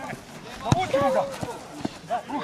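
Men calling out during a football kickabout on grass, with two sharp knocks of a ball being kicked: one a little under a second in, which is the loudest sound, and another near the end.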